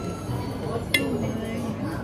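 A single sharp clink of glassware about a second in, ringing briefly.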